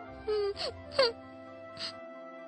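Three short cartoon whimpering sounds, each sliding in pitch, over steady background music. The second one, about a second in, is the loudest.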